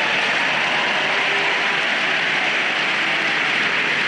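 Large audience applauding: dense, steady clapping that holds at an even level throughout.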